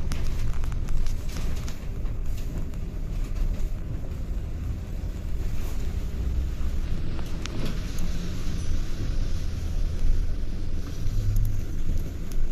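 Steady low rumble of a double-decker bus on the move, heard from inside, with road and tyre noise on a wet road.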